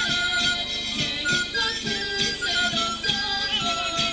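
Traditional folk dance music: a high, stepping melody over a steady beat of about three strokes a second.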